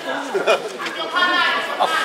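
Voices shouting and calling out at ringside in a large hall during a boxing bout, with a sharp crack about a quarter of the way in.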